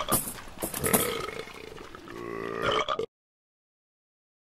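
Comic belching and grunting performed by a person's voice. The last belch is drawn out and low-pitched, and the sound cuts off suddenly about three seconds in.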